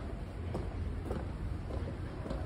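Wind rumbling on a handheld camera's microphone while walking, a steady low buffeting with a few faint knocks.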